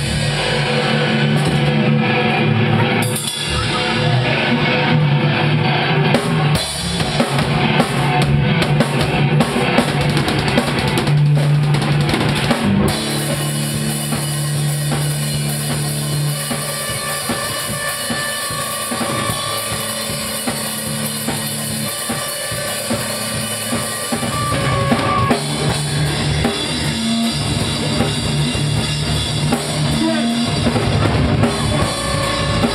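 Live band playing loud and dense: a drum kit with bass drum, snare and cymbals pounding under sustained low electric guitar and bass notes.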